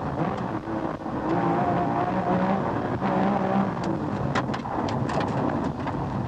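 Porsche 911 rally car's flat-six engine heard from inside the cockpit, running hard at speed with its pitch shifting up and down through the bends. A few short sharp clicks come a little after the middle.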